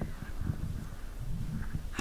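Faint low knocks and rustling: handling and movement noise as an audience member gets ready to speak.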